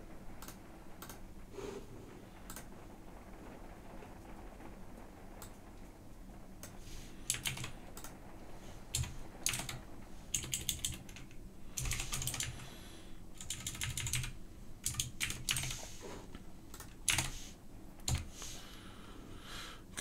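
Typing on a computer keyboard: irregular runs of key clicks, sparse at first and much busier through the second half, over a faint steady low hum.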